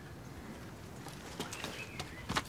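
Quiet outdoor rural ambience with a faint bird call in the second half and a couple of light knocks about halfway through.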